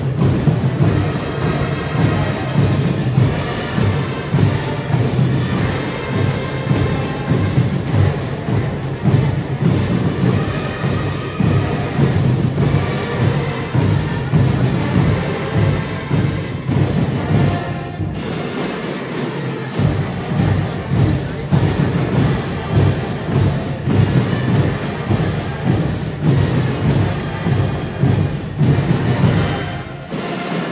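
Marching band playing: a massed section of bass drums beating a steady rhythm under brass. The bass drums drop out briefly about two-thirds of the way through, then come back in.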